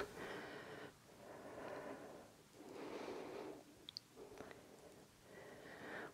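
Faint breathing of a person exercising: a few soft breaths about a second apart, with two tiny clicks near the middle.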